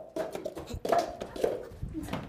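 Plastic cups being set down quickly on a hard floor one after another, with hurried footsteps: a rapid string of light clicks and taps.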